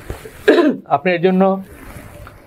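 A man's voice at a microphone: a short throat-clearing sound about half a second in, followed by a brief held vocal sound at a steady pitch.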